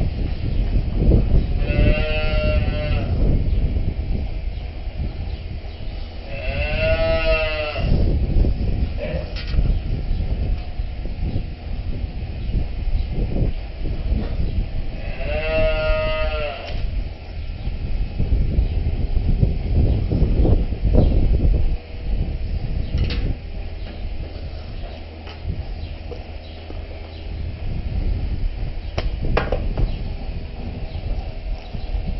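Dairy cows mooing three times, each a high, drawn-out call of about a second, the middle one rising and then falling in pitch. A steady low rumble and a few sharp knocks run underneath.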